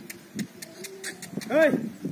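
Jallikattu bull goring loose earth with its horns, giving a quick run of sharp scrapes and clicks in the first second. About a second and a half in comes a short, loud voice call that rises and falls in pitch.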